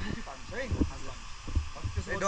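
A voice talking faintly, with low dull thumps on the microphone.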